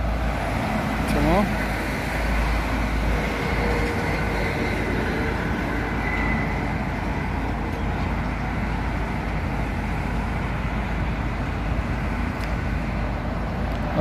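Steady road traffic noise, a continuous rush of vehicles with a low rumble underneath.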